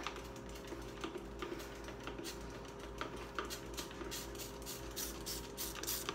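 Faint, irregular light clicks, taps and rubbing from cleaning an electric stovetop: a plastic spray bottle being handled and a cloth wiping the surface. A steady low hum sits underneath.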